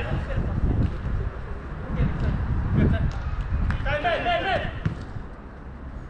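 Soccer ball thudding off boots on an artificial-turf five-a-side pitch, a few separate kicks, over a steady low rumble. A player gives a high-pitched shout about four seconds in.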